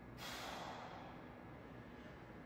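A man's forceful exhale, lasting under a second near the start, as he strains through a dumbbell lateral raise, over a steady faint room hiss.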